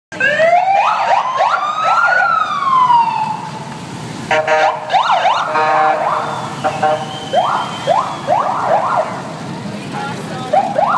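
Police motorcycle sirens going in overlapping rising and falling sweeps: a long wail in the first few seconds, then quick repeated yelps. A buzzing horn blast sounds about four seconds in, over a low rumble of engines.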